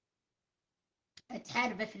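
A pause of dead silence for just over a second, then a brief click and a woman's voice resumes speaking.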